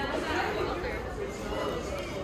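Indistinct chatter of other people's voices in a busy indoor shop, with the steady murmur of the room.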